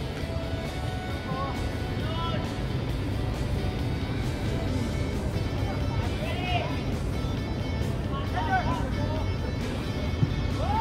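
Football pitch ambience: a steady low rumble with a few faint, distant shouts from players, about two, six and eight seconds in.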